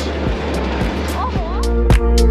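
Amusement-arcade din: a noisy background with a steady pulsing beat and a brief child's voice. Near the end, louder music with sustained notes and strong drum hits comes in.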